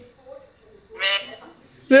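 A short exclamation from a voice on a FaceTime video call, about a second in, otherwise little more than room tone.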